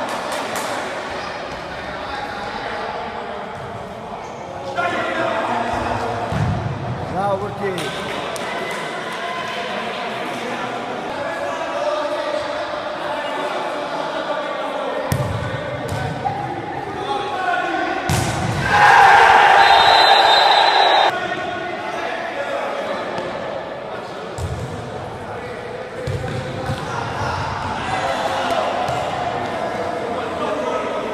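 A futsal ball being kicked and bouncing on the hard floor of an echoing sports hall, with sharp knocks from the kicks and players' voices throughout. About 19 seconds in comes a loud burst of shouting lasting about two seconds.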